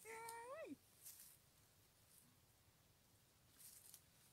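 A woman's short drawn-out vocal exclamation at the very start, rising in pitch and then sliding sharply down. After it, near silence with a few faint rustles in the undergrowth where she is picking.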